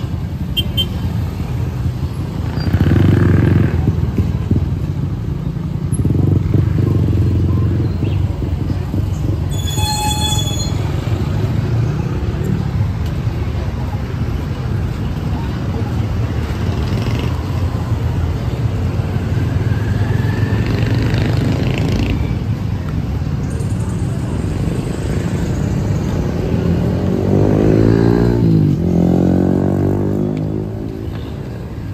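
Busy street traffic: motorcycle and vehicle engines running by steadily. About ten seconds in there is a brief high-pitched tone, and near the end a vehicle engine passes close, its pitch rising and then falling.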